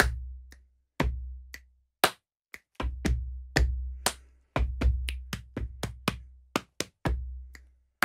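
Body percussion rhythm (hand claps, snaps, chest hits and foot stomps) played over a slow electronic drum beat that has a deep kick about once a second and light ticks between. A faster, denser run of hits comes in the middle before the pattern settles back to the steady beat.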